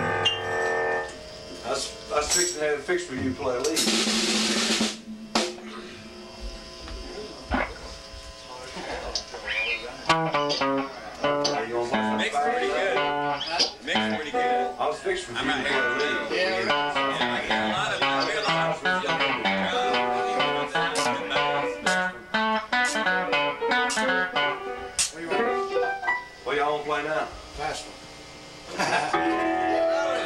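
Live rockabilly band jamming on piano and electric guitars. Notes ring out at the start, things go sparse for several seconds, then from about ten seconds in the piano and guitars play a busy, continuous stream of notes.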